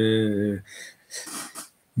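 A man's voice holding a drawn-out hesitation sound for about half a second, followed by faint breathing as he pauses before speaking on.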